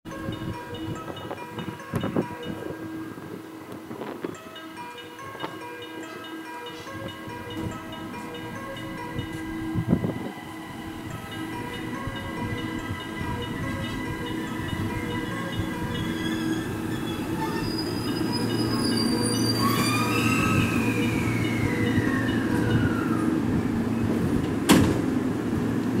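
A JR West 223 series 2000-subseries electric train pulling into the platform and braking to a stop, growing louder as it approaches. Its motor whine falls in pitch as it slows near the end, and a single sharp click comes just before it stops.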